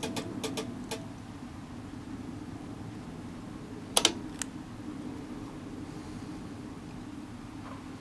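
Owens Corning AttiCat insulation blowing machine clicking about five times in the first second as its remote control is pressed, without the blower starting: the remote is not switching it on, which is thought to be down to weak batteries in the remote. A steady low hum runs underneath, and a sharper double click comes about four seconds in.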